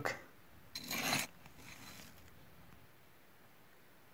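A short scrape of a tool digging into dry, gravelly sand about a second in, followed by a fainter rustle of grit that dies away by about two seconds.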